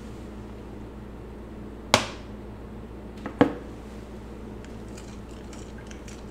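Two sharp knocks of kitchen utensils, about a second and a half apart, as liquid dish soap is measured with a plastic measuring spoon and stirred into a glass mixing bowl. A steady low hum runs underneath.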